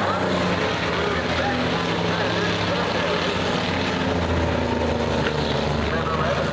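Several dirt-track enduro stock cars running laps together: a steady blend of engine drones whose pitches shift as cars pass, with voices in the crowd.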